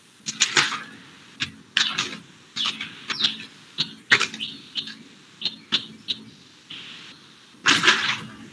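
Irregular short clicks and taps, roughly two a second, heard over a video-call microphone.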